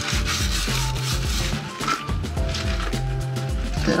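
Toilet brush scrubbing around the inside of a toilet bowl through the water, a steady run of rubbing strokes, with background music underneath.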